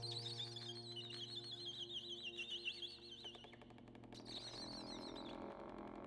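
Free-improvised music for accordion, trumpet and piano, played quietly: a steady held low chord stops about three seconds in. Over it run a high, rapidly warbling tone that breaks off and returns, and a dense patter of fast small clicks.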